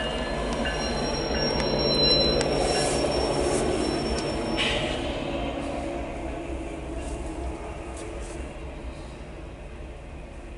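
A GE ET44AC diesel-electric freight locomotive passing close by, its engine rumble loudest about two seconds in, with a thin, high, steady squeal of steel wheels on rail until about five seconds in. The sound then eases into the quieter rolling of freight car wheels over the rails.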